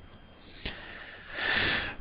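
A man draws a breath in through his nose, a short breathy intake near the end, just before he speaks. A single faint click comes about a third of the way in.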